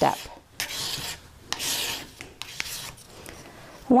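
Fine sandpaper on a sanding stick rubbed in a few slow strokes across the flat steel face of a bezel pusher, a dry scratchy hiss with each stroke. The sanding takes out the file marks left on the tool's face.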